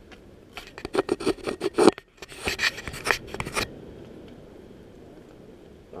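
A quick run of scraping, rubbing and clicking handling noises right against the microphone, as the rider's jacket and hands work at the gear next to the camera. The noise stops about three and a half seconds in, leaving a low steady background.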